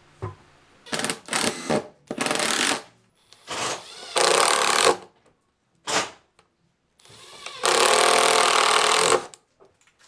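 HiKOKI cordless impact driver hammering screws through steel brackets into a plywood box. It runs in several short bursts with pauses between them, and the last, near the end, is the longest at about a second and a half.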